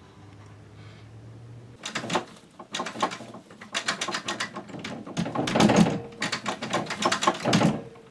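Rapid, irregular knocking and rattling on a wooden door, starting about two seconds in and going on for about six seconds.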